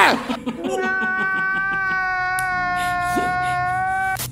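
One long, steady, high-pitched wailing note, held for about three seconds, with a brief lower rising sound near the end.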